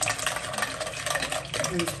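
Wire whisk beating cake batter in a glass bowl: a quick, continuous scraping clatter of the wires against the glass.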